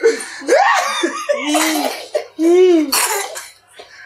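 Men laughing hard, with coughing mixed in among the laughs, in several loud vocal bursts.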